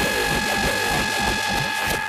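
Hardcore gabber electronic music: a held, steady high synth tone over a dense, rattling, grinding texture.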